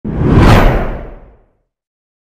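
Logo-intro whoosh sound effect with a deep low end, swelling to its peak about half a second in, then fading out, its top dropping away, by about a second and a half.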